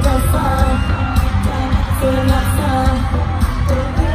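Live K-pop music with a female lead vocal over a heavy bass beat and a live band, heard from among the audience in an arena.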